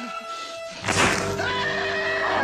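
Film soundtrack: sustained dramatic music, then about a second in a sudden loud crack as the man's wrist is snapped in the arm wrestle, followed by his wavering scream of pain over the music.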